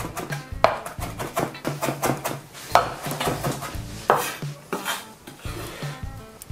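Chef's knife rapidly chopping dill and garlic on a wooden cutting board, a quick run of blade strikes with a few harder ones in the middle, over background music.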